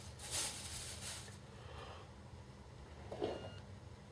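Plastic bag crinkling and rustling as a latex balloon is pulled out of it, in the first second and a half, followed by a short, brief sound about three seconds in.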